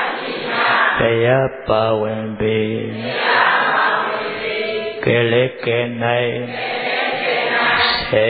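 A low male voice chanting Buddhist verses in a steady, sing-song recitation, in phrases about a second or two long with short pauses between them.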